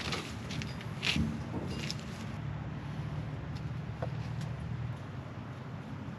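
A few rustles and knocks, the loudest about a second in, like footsteps and handling in grass. Then a low steady rumble.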